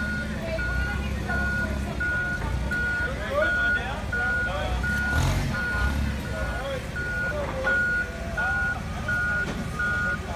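Propane-powered Toyota forklift reversing: its back-up alarm beeps steadily, about three beeps every two seconds, over the low running of its engine. Near the end a lower, steadier tone comes in.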